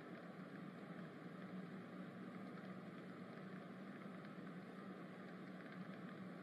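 Faint, steady background ambience: an even hiss with a low hum under it, with no events or changes.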